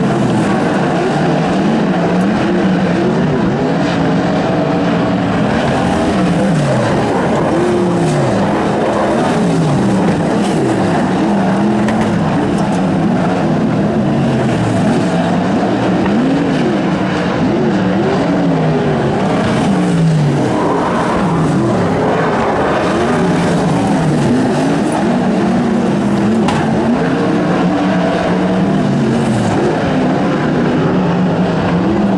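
Several winged micro sprint cars' engines running on a dirt oval, their pitch rising and falling over and over as they accelerate and lift around the track, several engines overlapping.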